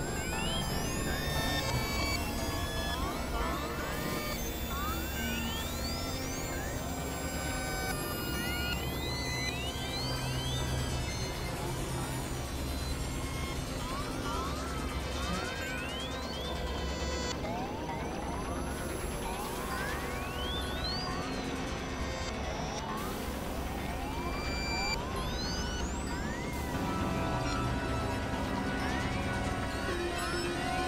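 Experimental electronic synthesizer music: a dense bed of held tones over a low drone, laced with many quick sweeps that rise and then fall in pitch.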